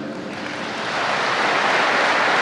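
Large audience applauding, the clapping swelling over the first second and then holding steady.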